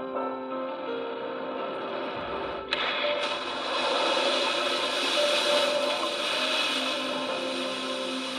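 Background music with steady held tones, then about three seconds in a sharp crack followed by a loud rushing noise lasting several seconds: a sound effect of a meteor plunging into the sea.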